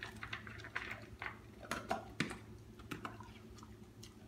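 A dog eating dry kibble from a plastic bowl: irregular crisp crunches and clicks of the pieces, the loudest a little past the middle.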